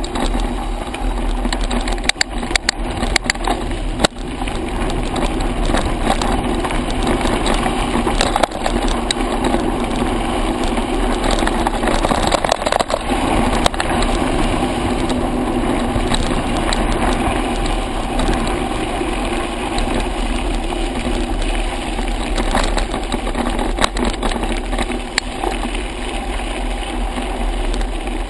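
Continuous wind rush and tyre noise on a mountain bike riding fast downhill on a loose gravel track, recorded by a camera on the bike. Scattered sharp knocks and rattles come from bumps in the track, several of them in the first few seconds.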